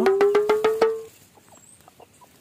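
Short comic sound effect: a slowly rising tone over fast, even ticking of about eight clicks a second, ending about a second in.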